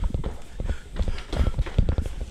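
Quick, irregular footsteps thudding on a floor or stairs, several knocks a second, as someone hurries through a house.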